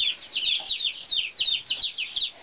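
A flock of baby chicks peeping: many short, high peeps, each falling in pitch, overlapping several times a second.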